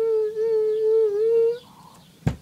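A woman's voice holding one long, steady note that wavers slightly and stops about a second and a half in.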